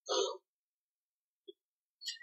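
A single short breathy vocal sound, like a quick chuckle or breath, right at the start, then silence in the pause between sentences.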